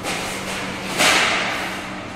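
A sudden hissing whoosh about a second in, fading away over the next second, over a steady low hum.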